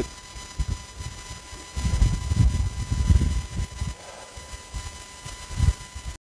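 Low, uneven rumbling on a phone's microphone outdoors, strongest from about two to three and a half seconds in, over a faint steady high-pitched tone.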